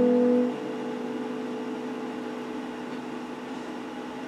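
Electric guitar chord ringing out, dropping away within the first half second and leaving a faint held note that dies out about halfway through, over a steady hiss.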